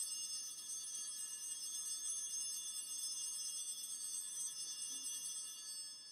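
Altar bell ringing during the elevation of the consecrated host: a sustained ring of many high tones that fades out near the end.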